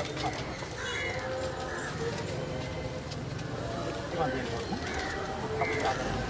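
Murmur of a crowd's voices with no single clear talker, with a few short chirps over it.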